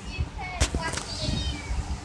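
Domestic cat meowing: a short call that falls in pitch about half a second in.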